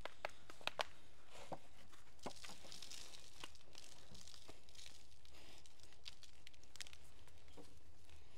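Quiet planting sounds: scattered light clicks and soft rustling as hands work potting soil and set tomato seedlings into plastic pots, over a faint steady background.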